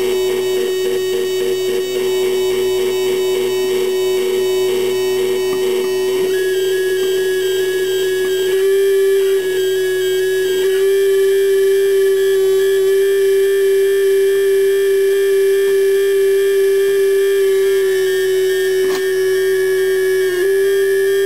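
Homemade electronic noise instrument built into a metal lamp shade, sounding a loud electronic drone on one steady pitch. For the first six seconds the tone pulses in a quick rhythm, then it settles into a steady tone with a small step up in pitch about nine seconds in and a single click near the end.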